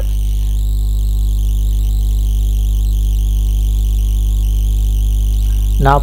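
A steady low hum with no other event, the constant background noise of the recording.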